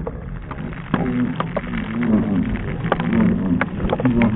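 Men whooping and shouting in celebration, with scattered sharp clicks.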